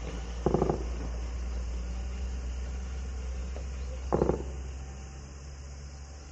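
Two short bursts of distant automatic gunfire, about half a second in and again just after four seconds, each a quick run of a few shots, over a steady low rumble.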